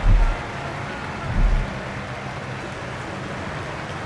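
Steady stadium crowd noise, an even wash of sound, with two deep bass thumps about a second and a half apart near the start.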